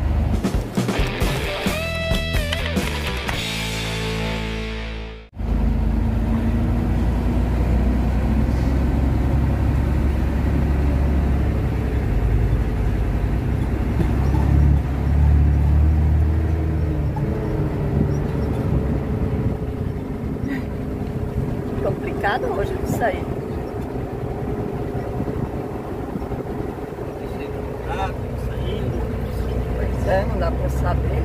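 Low, steady rumble of a truck engine heard from inside the cab as the truck rolls slowly at low speed. In the first five seconds a short stepped tune plays over it, cut off abruptly.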